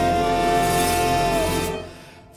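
Theatre orchestra holding the closing chord of a show tune, a high note sustained over it that bends down and dies away near the end.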